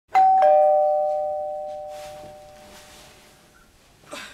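Two-note doorbell chime, a higher note then a lower one a quarter second later, both ringing out and slowly fading over about three seconds.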